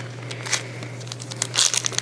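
Crinkling of a hockey card pack's foil wrapper as packs are handled and opened: a short rustle about half a second in, then a longer burst of crinkling near the end.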